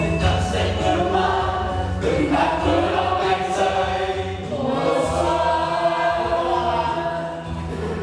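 A group of people singing together in chorus over a backing music track with a steady bass line.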